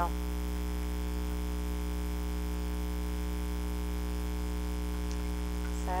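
Steady electrical mains hum, a low, unchanging buzz with its overtones.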